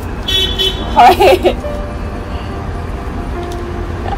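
Steady low rumble of city traffic from the streets below, with a short, high-pitched car horn toot shortly after the start and faint thin horn-like tones later on.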